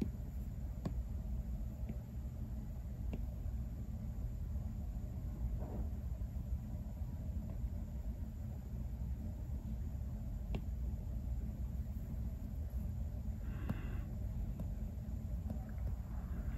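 Steady low room hum with a few faint light taps, from an Apple Pencil tip on an iPad screen.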